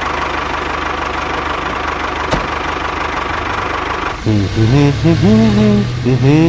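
A tractor engine running steadily at an even pace. About four seconds in it stops abruptly and music with a melody takes over.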